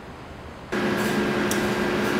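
Steady fan-like room noise with a low electrical hum in a high-power electronics lab. It starts abruptly about 0.7 s in, with a brief click near 1.5 s.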